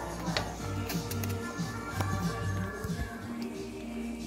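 Background music with a steady bass line, with a few light clicks of a serving utensil against a metal pot as chili is spooned into a bowl.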